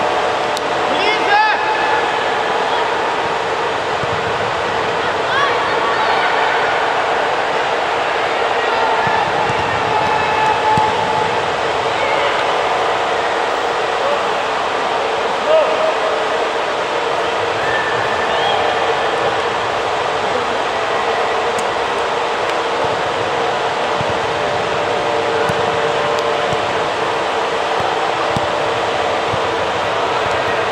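Echoing ambience of an indoor football hall during a youth match: a steady hum under scattered distant shouts of children and adults on the pitch, with a few brief louder moments.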